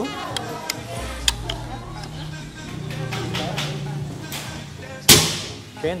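Black Panther break-barrel spring air rifle (a 'gejluk') being test-fired: a few sharp clicks and knocks as it is handled, then one loud shot about five seconds in with a short ringing tail.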